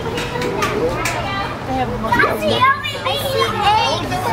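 Background chatter of people nearby, mostly high-pitched children's voices talking and calling out.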